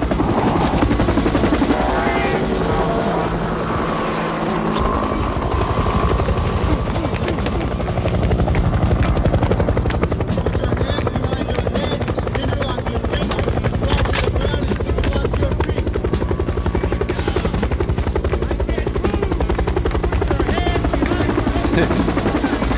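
Helicopter rotor chopping steadily in a music video's soundtrack, with music and voices underneath.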